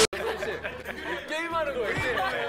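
Group chatter: several voices talking over one another in excitement, with laughter.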